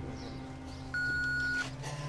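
Answering machine's record beep: a single steady electronic tone held for under a second, starting about a second in, over a low sustained musical drone.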